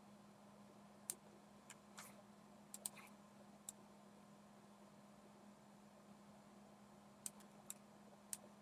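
Faint computer mouse clicks, a few scattered ones in the first four seconds and two more near the end, over a faint steady low hum.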